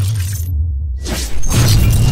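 Cinematic intro sound design: a heavy bass bed with metallic shattering effects. The high end cuts out for a moment near the middle, then sweeps back in, and a louder hit follows.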